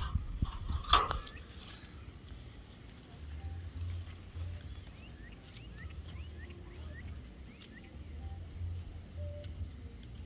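Wire bird cage being bent open by hand: a few metallic clicks and a sharper clatter about a second in, then low rumbling on the microphone, with a run of faint short rising chirps midway.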